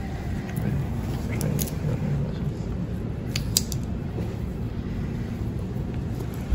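Steady low background hum of a shop interior, with a few faint light clicks: one about a second and a half in and two close together a little past the middle.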